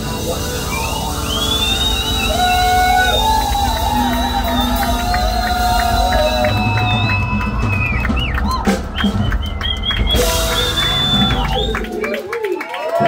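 Live rock band playing loud, with high wavering, sliding tones over a dense low rumble of bass and drums. A run of sharp strikes comes in about two-thirds of the way through.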